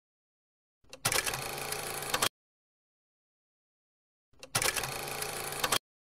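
Two matching bursts of noisy sound, each about a second and a half long, separated by dead silence: a sound effect added in video editing.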